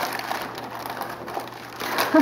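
Gift-wrapping paper rustling and crinkling as it is torn and pulled off a cardboard box.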